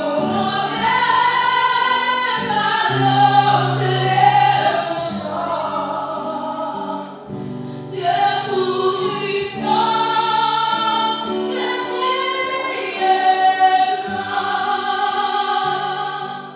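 A slow hymn sung by a choir, with long held chords over a sustained bass line.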